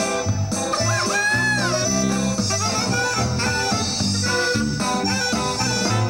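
Live band playing Latin dance music: a saxophone-led melody over bass and drums, with no singing.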